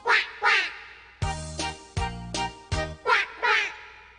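Quacking calls in two pairs, one pair at the start and another about three seconds in, each call falling in pitch, set between bouncy, evenly struck keyboard and bass chords of a children's song.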